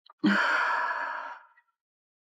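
A woman's single long sigh: a breathy exhale that starts sharply just after the start and fades away over about a second.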